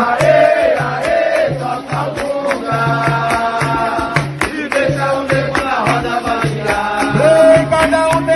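Capoeira music in São Bento rhythm: berimbau and percussion keep a steady, quick pulse under sung voices.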